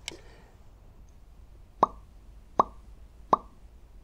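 Three short cartoon 'plop' sound effects, evenly spaced about three quarters of a second apart in the second half, each with a quick upward pitch sweep.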